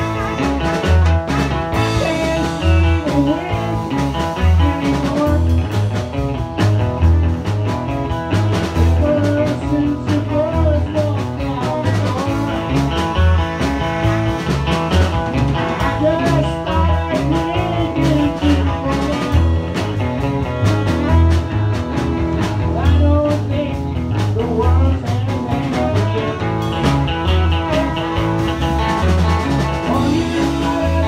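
Live band playing a blues-rock song: drum kit, electric bass and guitars, with a man singing into a microphone.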